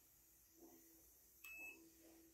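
Near silence broken by a single short electronic beep, one steady high tone about one and a half seconds in.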